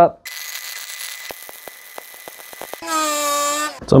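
A hiss, then a run of light clicks and taps, then a steady buzz from a small electric motor for about a second near the end.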